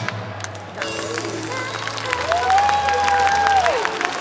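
Live idol-pop song over a PA, with a singer holding one long note from about two seconds in that slides down at the end. Audience clapping runs underneath.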